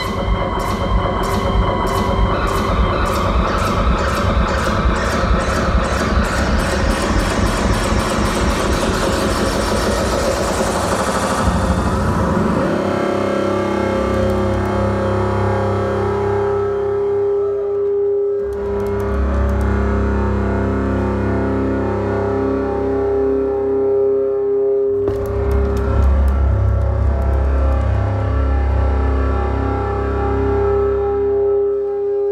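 Guitar run through effects and distortion, with no singing: about twelve seconds of dense distorted noise with a fast pulsing rhythm, then settling into long held droning tones over a deep bass.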